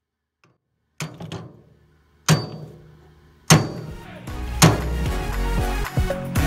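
Hammer striking the nut of a rusted bolt on a wheelbarrow's steel frame: four sharp metallic strikes about a second apart, each ringing on briefly. Background music with a steady bass comes in after the third strike.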